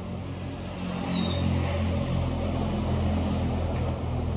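A vehicle engine running with a steady low hum that grows louder about a second in.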